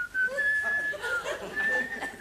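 A man whistling a slow tune through pursed lips, a clear single tone stepping between held notes.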